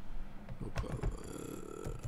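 Computer keyboard keys clicking as someone types, a few scattered keystrokes.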